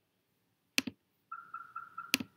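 A single sharp computer mouse click about a second in. Near the end comes a faint high tone pulsing about five times a second.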